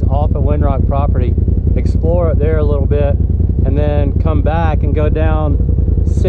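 People talking over the steady low drone of a Polaris RZR turbo side-by-side's engine running without revving.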